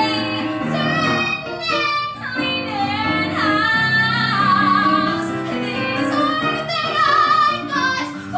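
A woman singing a show tune live into a handheld microphone, holding long notes with vibrato.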